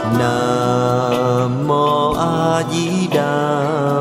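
Buddhist devotional music: a sung chant with instrumental accompaniment, the voice holding long notes and sliding between pitches.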